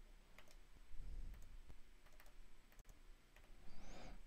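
Faint, scattered clicks of buttons being pressed on a Casio Privia Pro PX-5S stage piano's front panel while paging through its edit menus.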